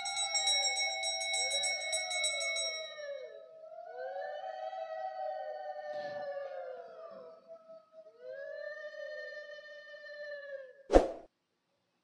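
Women ululating (Bengali uludhwani) in three long wavering breaths, several voices overlapping in a rising-and-falling pitch, while the ring of a struck bell dies away over the first few seconds. A sharp click near the end.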